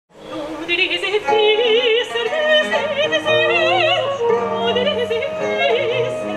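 A female soprano singing with a wide vibrato over a small early-music ensemble of violin, lute and a low string instrument, with plucked notes and sustained bass notes. The music fades in at the start.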